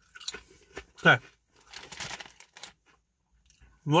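Salt 'n' Shake potato crisps crunching as they are chewed, with the crisp packet crinkling in the hand, in short bursts of crackle.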